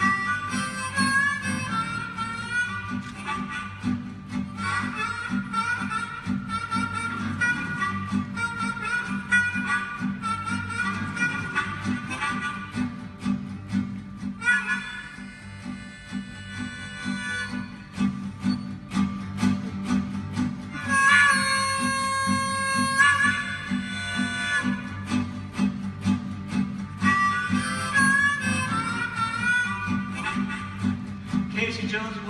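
Harmonica and acoustic guitar playing a boogie-woogie instrumental: the guitar keeps a steady repeating bass line while the harmonica plays melody, with long held harmonica chords about halfway through and again a little later, in freight-train style.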